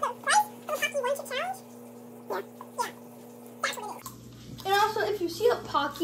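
A few short, high vocal calls that glide up and down, over a steady low hum, in the first second or so. A person starts talking near the end.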